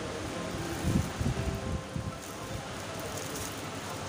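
Cloth rustling as a cotton panjabi is handled and unfolded, with a few soft knocks about a second in, over steady background noise.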